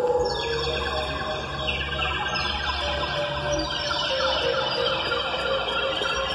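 Live experimental electronic music: dense stacks of sustained tones that slide downward in steps several times, siren-like, over a low steady drone that thins out a little after halfway.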